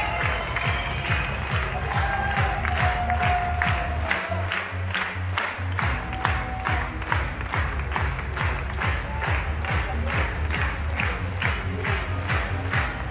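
Crowd clapping along in time to music with a steady beat and heavy bass, about two claps a second.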